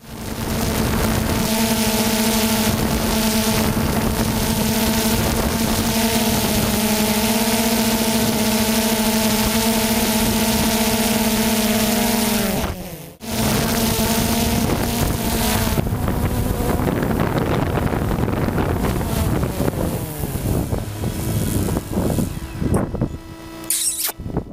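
A car engine held at a steady high speed for about twelve seconds; its pitch drops and it cuts out briefly, then it carries on rougher and uneven, falling in pitch.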